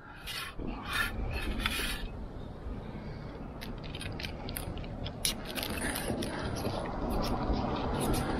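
Table knife cutting through a crispy pizza-pocket crust and scraping a metal camp plate in short strokes, over the rumble of a passing car that grows steadily louder.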